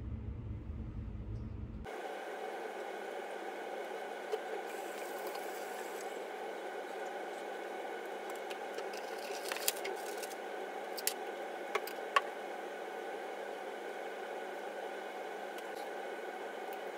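Steady rushing noise that changes abruptly about two seconds in, with a few sharp clicks and taps between about ten and twelve seconds in, the sort of sounds that handling skincare bottles at a bathroom sink makes.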